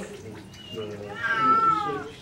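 A domestic cat gives one long meow about a second in, rising slightly and then falling, while it is held in a bath and its anal glands are being expressed.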